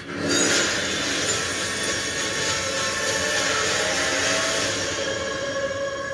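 Film-trailer sound design: a dense rushing noise swell that sets in just after the start and holds steady, with sustained musical tones coming in near the end as the score takes over.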